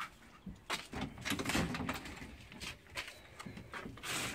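Dogs whining behind a closed house door, mixed with short clicks and rustles as the door is reached and its knob is grasped.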